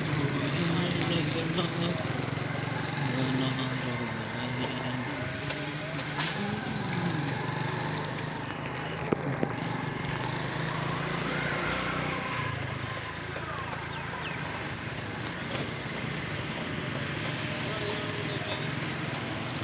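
Motorcycle engine running steadily at low speed, with road noise, a steady low drone throughout. Faint voices from the street come and go over it.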